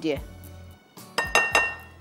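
A few quick clinks of a spoon against a glass mixing bowl a little over a second in, each ringing briefly, as two tablespoons of cornflour are spooned into the bowl.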